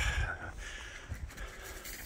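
Footsteps crunching through dry fallen leaves on a woodland path, a soft irregular patter.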